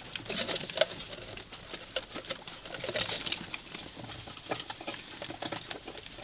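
Young rats' claws scrabbling and scratching on a cardboard box as they climb over and through it: irregular light clicks and rustles.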